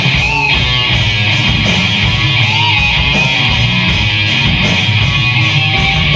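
Live rock band playing an instrumental passage: electric guitars strummed over bass and drums, with a steady cymbal beat.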